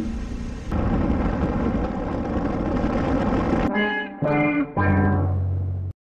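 Riding noise from a motorcycle helmet camera for the first few seconds, then a short edited-in musical sting of three descending notes, the last one the longest, which cuts off suddenly.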